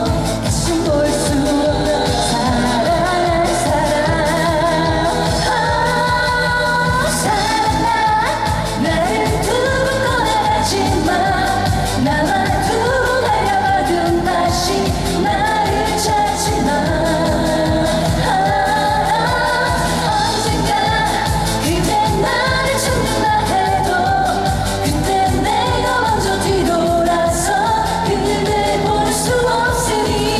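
A woman singing a Korean trot song live into a microphone, over pop accompaniment with a steady beat played through the stage speakers.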